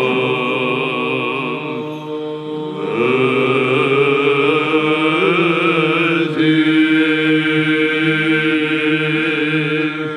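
Monks singing Byzantine chant for a bishop's entrance: male voices carry a slow melody over a steady low held drone note (the ison), with a brief softer dip about two seconds in.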